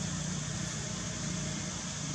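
A steady low hum over a constant hiss, unchanging throughout, like a running machine in the background.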